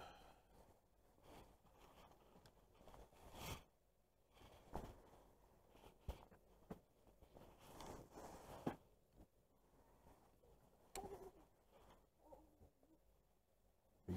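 Near silence with faint scattered rustles and a few light clicks from clothing and fishing gear being handled.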